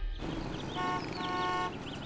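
City street traffic, with a car horn honking steadily for about a second near the middle.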